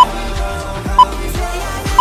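Workout countdown timer beeping once a second, short high beeps marking the last seconds of a rest break, over background music.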